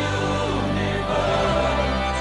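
Soundtrack music with a choir singing over sustained low notes; the bass moves to a new, lower held note about one and a half seconds in.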